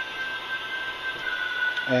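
Re-recordable greeting-card sound module playing its recorded angelic choir through its small speaker as the box lid opens and releases its normally closed lever switch: a sustained, thin, high chord with hardly any low end.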